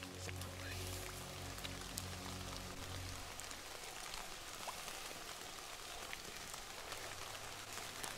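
Rain falling, a steady hiss with scattered faint drop ticks. Soft held low music notes sound underneath for the first three seconds or so, then fade out.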